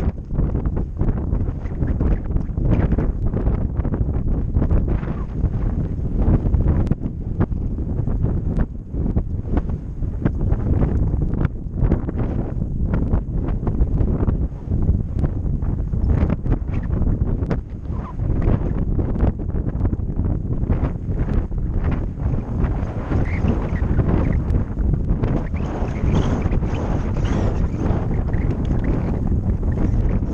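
A horse cantering on a grass track: hoofbeats thud again and again under loud wind rush and buffeting on the microphone.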